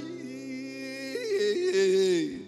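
Male voice singing long held notes without words, stepping up in pitch about a second in, holding there, and sliding down at the end.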